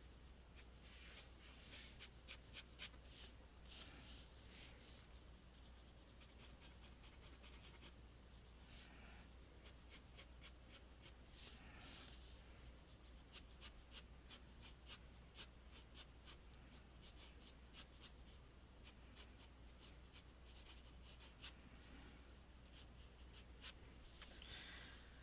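Pencil sketching on paper: quiet, scratchy strokes in clusters and quick runs of short strokes.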